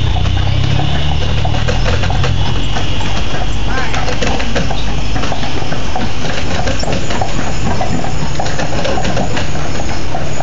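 Carriage horse's hooves clip-clopping steadily on the street as the carriage rolls along. A low engine hum runs under it for roughly the first half, then fades.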